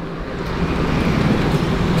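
Road traffic on a highway, heavy vehicles rumbling, growing steadily louder as a truck approaches.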